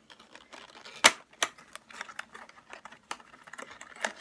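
Cosmetics packaging being handled and opened: irregular light clicks and taps, with a sharper click about a second in and another shortly after.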